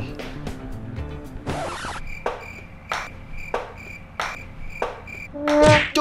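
Comedy sound effects laid over a dart throw: a short whoosh about one and a half seconds in, then a repeated high chirping tone with soft knocks about every half second, and a quick pitched swoop just before the end.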